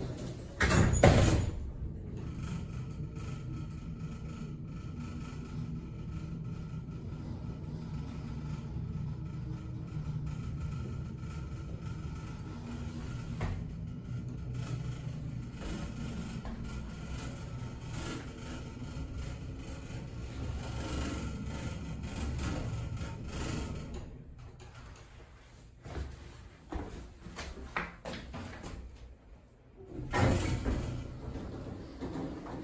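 Westinghouse hydraulic elevator: the car doors shut with a thump about a second in, then a steady low running hum as the car travels. The hum fades out after about 24 seconds as the car stops, followed by a few clacks as the doors begin to open.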